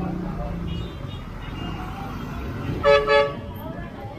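A vehicle horn gives two short toots in quick succession about three seconds in, over steady street traffic and voices.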